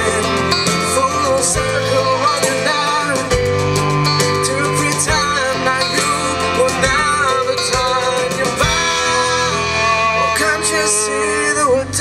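Live folk-rock band playing an instrumental break, with banjo and other plucked strings over bass guitar, cello and a steady drum beat.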